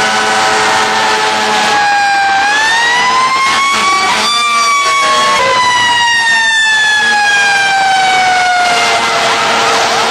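Fire truck sirens, several at once, wailing with slowly rising and falling pitch as the trucks drive past. A steady low tone is held at the start and again near the end.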